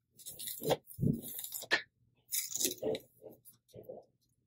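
Rat-tail comb and fingers scraping and rustling through hair as a parting is traced, a series of short, faint scratchy strokes.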